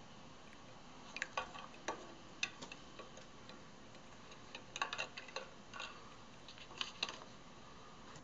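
Faint, irregular light clicks and taps of plastic spoons against plastic measuring cups as sugar and a rock candy lump are tipped into water and stirred, with a cluster of taps a little after the middle.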